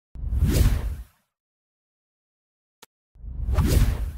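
Two whoosh sound effects from an animated logo intro, each swelling and fading over about a second with a deep low end: one at the start, the second near the end. A faint click falls between them.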